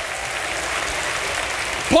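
Congregation applauding, a steady even clatter of many hands that holds level until the preacher's voice comes back in at the end.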